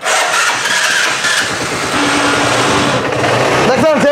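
TVS Metro ES motorcycle's engine started on its electric self-starter and running steadily, with a man's voice coming in near the end.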